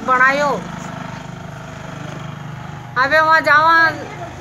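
A woman's voice in short bursts at the start and near the end, with a steady low engine hum underneath that is heard on its own for about two seconds in between.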